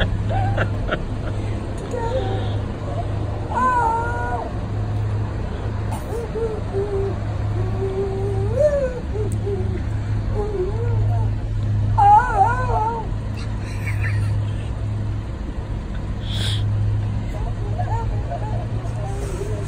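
A man singing along without clear words, his voice wavering and sliding in pitch in short phrases, over a steady low hum.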